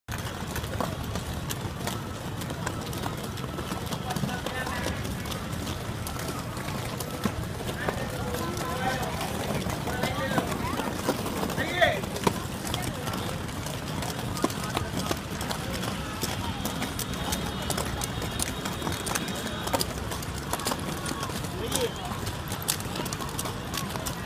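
Many quad roller skates rolling on a concrete rink: a steady low rumble of hard wheels with frequent clicks and clatter. Children's voices call out over it, with a loud shout about twelve seconds in.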